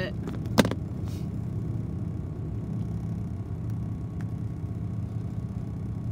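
A single sharp snip of small thread scissors clipping a basting stitch, about half a second in, over a steady low hum. A few faint ticks of handling follow.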